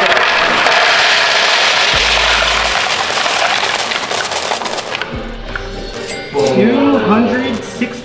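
A large load of quarters pouring in a steady rush from a plastic tub into the pan of a coin-counting scale. The pour dies away about five seconds in, leaving a few scattered clinks.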